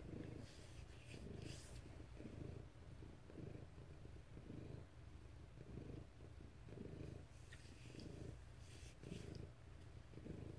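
Domestic cat purring, faint and steady, pulsing about twice a second.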